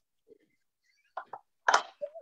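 Near silence, broken by a faint blip, two short faint sounds a little over a second in, and then a spoken "okay" near the end.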